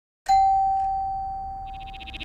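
Channel-ident chime: a single bell-like ding struck once, its tone ringing and slowly fading. Near the end a rapid fluttering buzz starts.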